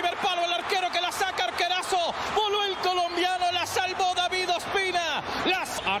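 A man's voice commentating on the football match, talking continuously.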